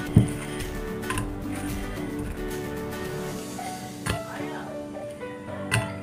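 Background music playing throughout, with a plate being set down on a table just after the start and a few light knocks and clinks as fried snacks are laid on it.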